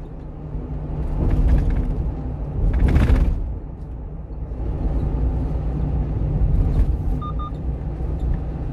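A 1-ton refrigerated box truck's engine and road noise heard from the cab, a low steady rumble while driving slowly, swelling louder twice. Two short beeps sound near the end.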